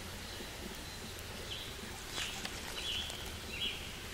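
Quiet woodland background with a few short, high bird chirps scattered through it and a faint click about halfway through.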